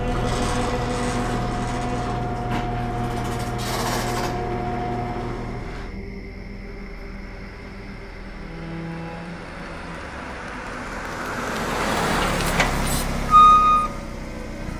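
A car approaching, its sound building over the last few seconds, with a short loud burst near the end. In the first six seconds there is a low steady drone with several held tones.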